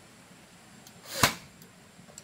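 A single sharp knock on bamboo about a second in, swelling briefly just before the hit, as pieces are worked into a bamboo bed frame's headboard.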